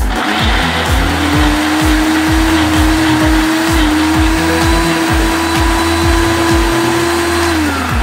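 Ninja Auto-iQ blender motor blending a milkshake: it spins up about a second in, runs at a steady pitch, then winds down near the end. Background music with a steady beat plays underneath.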